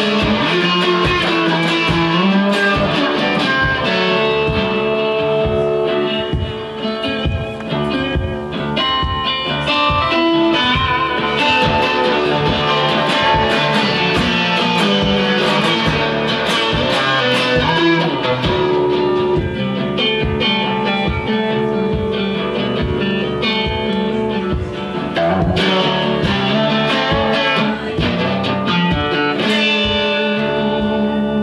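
Metal-bodied resonator guitar played live, a driving, rhythmic picked and strummed figure with ringing notes, without vocals.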